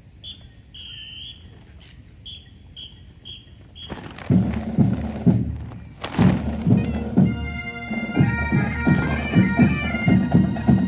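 Bagpipe band starting up. After a few short, high whistle-like tones, drums strike in about four seconds in, and the bagpipes' melody joins about three seconds later and plays on loudly.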